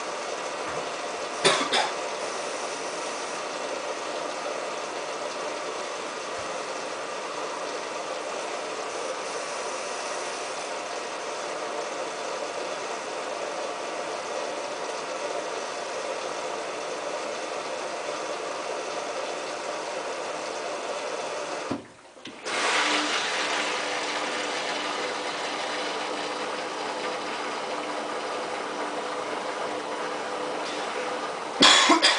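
Samsung WF8804RPA front-loading washing machine in its wash stage: the drum tumbles wet laundry with a steady churning of water and fabric over the motor. There is a sharp knock about a second and a half in. A little past two-thirds of the way through the sound drops out for about half a second, then resumes louder with a steady low hum.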